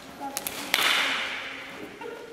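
A sharp slap of hand against arm as a fast trapping strike lands, about three-quarters of a second in, followed by a short fading hiss. Two faint taps come just before it.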